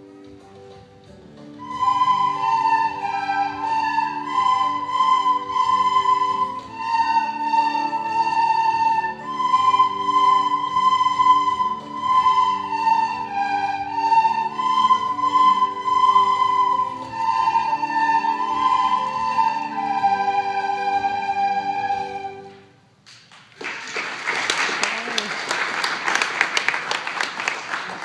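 A large group of children playing recorders in unison, the melody carried by the recorders with a lower accompaniment underneath. The tune stops about 22 seconds in, and applause follows.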